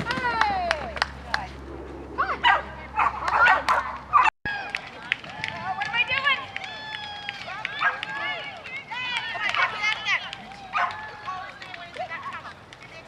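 A dog barking and yipping in short, high-pitched calls, some gliding down in pitch, mixed with a person's voice calling out. The sound drops out for an instant about four seconds in.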